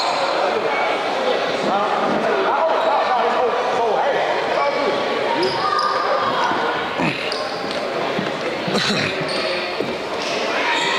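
Many overlapping voices of players and spectators echoing in a basketball gym, with short high squeaks from the court. A sharp knock sounds near the end.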